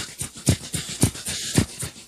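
A steady drum groove: a kick drum hitting about twice a second, with lighter strikes between and a hiss of cymbals over the top.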